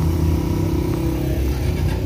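Small motorcycle engine running steadily close by, a low, even rumble.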